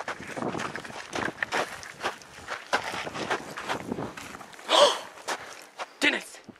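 Footsteps crunching on a dry dirt and gravel trail, an uneven run of steps throughout. A single brief, louder noise stands out about five seconds in.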